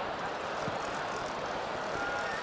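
Steady crowd noise from the spectators in a football stadium.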